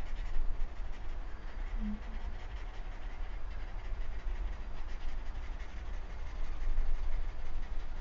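A steady low rumble, with faint strokes of a drawing tool scratching on sketchbook paper.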